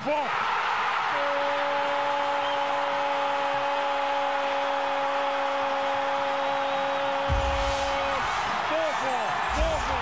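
Spanish-language football commentator's long drawn-out goal cry, one vowel held on a single steady pitch for about seven seconds over steady crowd noise. Near the end it breaks into rapid repeated short "gol" shouts.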